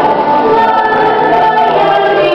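A group of children singing a song together, their voices holding sustained notes in a smooth, continuous melody.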